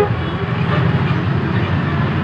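A steady low rumble of background noise with no distinct events.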